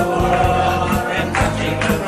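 A group of men singing a rousing song together to acoustic guitar, with a steady beat about twice a second.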